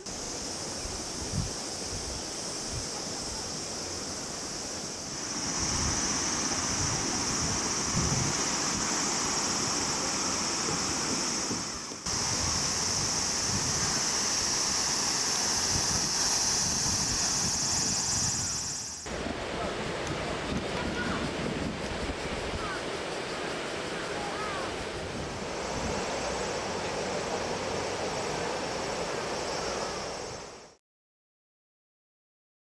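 Outdoor summer ambience dominated by a steady high-pitched drone of cicadas. Wind rumbles on the microphone beneath it, and faint voices of people about. The sound changes abruptly at cuts about 5, 12 and 19 seconds in, with the cicada drone dropping away after the last.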